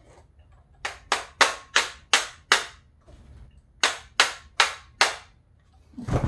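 A run of sharp clicks as the parts of a Ruger AR-556 rifle are handled: six in quick succession about a third of a second apart, a short pause, then four more.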